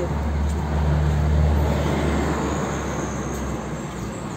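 Low rumble of a passing motor vehicle that comes in at the start and fades away near the end.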